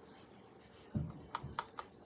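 A soft knock, then three or four quick sharp clicks, like small hard objects being handled.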